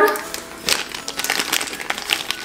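Small clear plastic bag crinkling as it is handled, with a USB charging cable inside: a run of irregular crackles.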